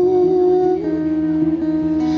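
Live acoustic pop band playing: strummed acoustic guitar with bass guitar and cajon, a steady held note over them.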